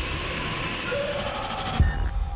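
Horror film trailer soundtrack: a dense rumbling din cut off by one heavy boom near the end, the hit that lands on the title card.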